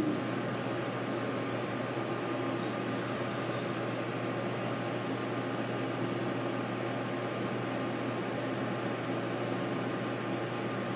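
A steady low mechanical hum with a hiss over it, unchanging throughout, heard indoors behind glass.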